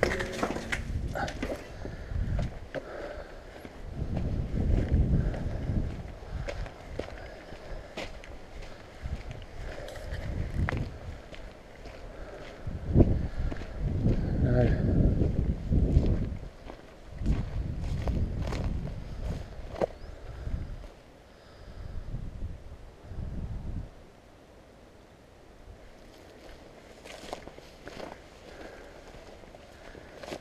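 Footsteps of a person walking over rough, debris-strewn ground, with gusts of wind rumbling on the microphone that die away a few seconds before the end.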